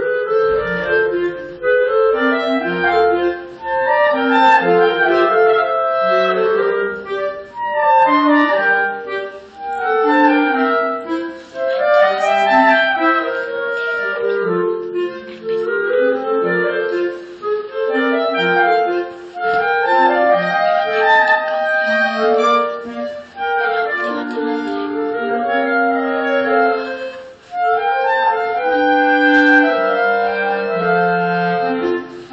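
A clarinet quartet playing, several clarinet lines moving together in harmony. The music begins right at the start, with brief pauses between phrases.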